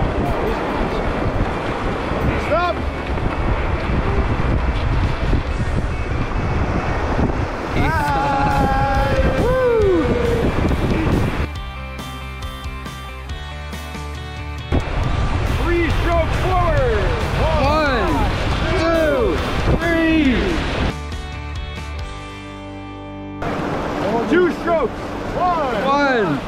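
Whitewater rapids rushing past a rubber raft, with wind buffeting the action-camera microphone. The rush drops away twice for a few seconds.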